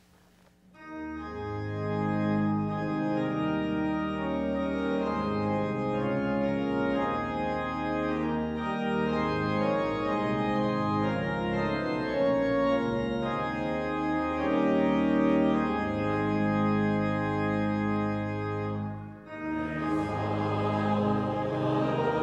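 Church organ playing sustained chords as the introduction to a congregational psalm tune. After a brief break near the end, the congregation begins singing with the organ.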